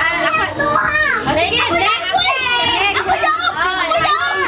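A crowd of children talking over one another, many voices at once with no pause.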